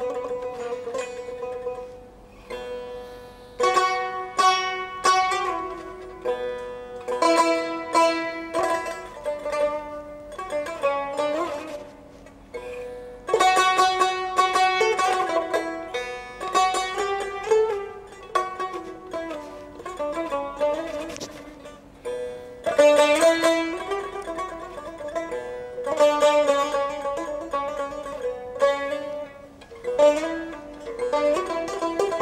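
Solo tar, the Azerbaijani long-necked lute, plucked with a plectrum: a melodic improvisation of quick-picked notes and runs in phrases, with brief pauses between them and louder passages about four, thirteen and twenty-three seconds in.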